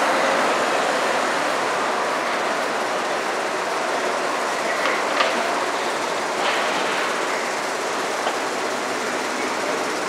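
Steady city street noise, an even rushing wash without clear tones, with a couple of sharp clicks about five and six and a half seconds in.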